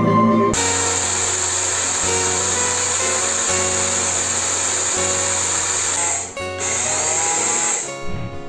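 Philco Liqfit personal blender's motor running, grinding dry rice into flour. It starts about half a second in, drops out briefly near the end, runs again and then stops. Background music plays underneath.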